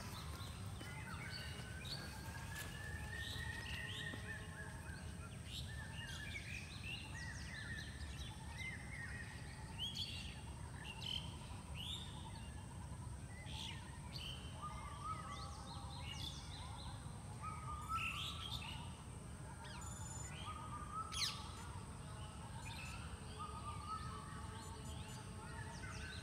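Several birds chirping and calling, one short call after another, over a steady low rumble.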